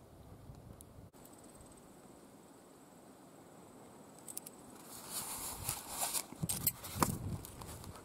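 Faint outdoor quiet with a thin high tone, then from about halfway through crunchy footsteps on loose gravel, growing louder towards the end.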